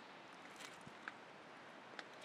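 Near silence: faint steady outdoor background hiss with a few faint small clicks near the middle.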